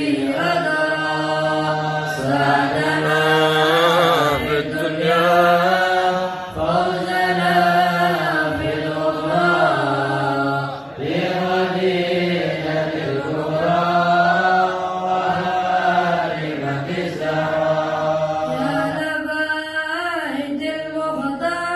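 A large group of men chanting a devotional song together in unison, with long held notes that slide up and down over a steady low drone.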